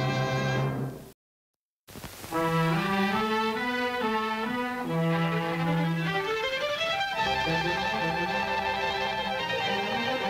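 Cartoon soundtrack music. A held closing chord fades out in the first second, followed by a short gap of silence. About two seconds in, new orchestral title music starts with a moving melody.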